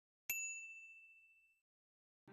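A single bright ding, a bell-like chime sound effect struck once and ringing out, fading away over about a second.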